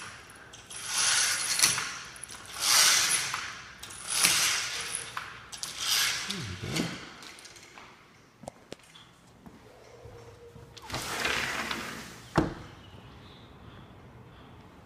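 Metal bead chain of a roller window shade rattling through its clutch as it is pulled in several strokes, each about a second long, with a sharp click near the end.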